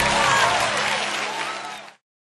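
Applause, with a few voices, over the dying last chord of a choir's praise chorus, fading and cutting off just before the end.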